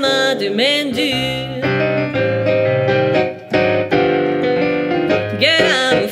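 A female voice singing a song with digital stage piano accompaniment. Sung phrases come at the start and again near the end, with piano chords and a stepping bass line filling the middle.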